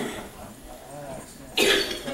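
One short, loud cough about a second and a half in, over faint voices in the room.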